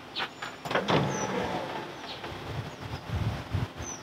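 Power tailgate window of a 1967 Ford Country Squire wagon going down: the window motor running, with scrapes and knocks as the glass moves in its tracks. The glass sticks and has to be helped down by hand, a binding that probably can be fixed by working on the tracks.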